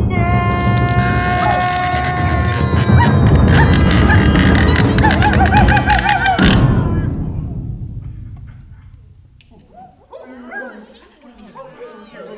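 A loud, dramatic music cue mixed with clattering and crashing sound effects for an earthquake and falling tree, with many sharp impacts over held tones. It cuts off abruptly about six and a half seconds in, then dies away, and faint voices come in near the end.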